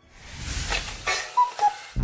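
A whooshing transition swell rises, followed by two short falling notes like a cuckoo clock's call, marking time passing.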